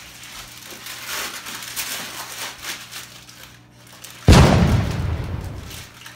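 Wrapping paper rustling and tearing as a present is unwrapped, then a little over four seconds in a sudden loud boom that dies away over a second or so.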